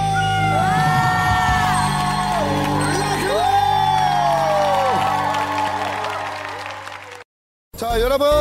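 The closing bars of a song: a girl's voice holds two long high notes over the band's accompaniment, and the music fades out about seven seconds in. After a short silence, a man starts speaking just before the end.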